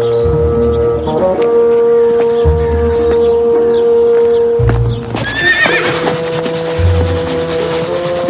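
Background music with long held notes over a slow low pulse; about five seconds in, a horse whinnies briefly.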